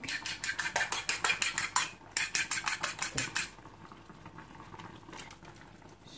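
A metal utensil beating egg in a ceramic bowl: rapid clinking strokes, about eight a second, in two runs with a short break about two seconds in, stopping about three and a half seconds in.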